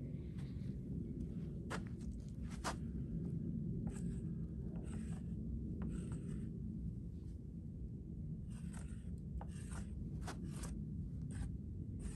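A marker scratching short strokes across the rough wood of a log, drawing layout lines for the cuts, over a steady low background rumble.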